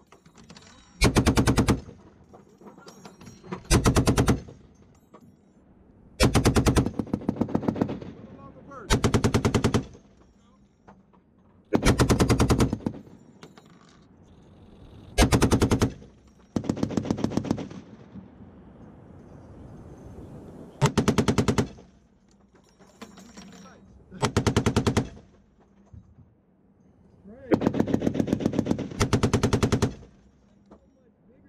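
Browning M2 .50 caliber heavy machine gun firing about ten short bursts of rapid shots, with a second or two of pause between bursts. The final burst, near the end, is the longest.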